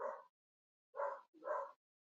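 A dog barking three times, faint and short, at the start, about a second in and again half a second later.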